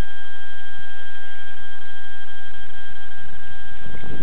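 Steady electronic hiss with a constant high whine from a small onboard camera's microphone circuit. Nothing changes throughout, and no motor is running.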